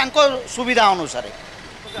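A man speaking for about the first second, then a steady background of street traffic.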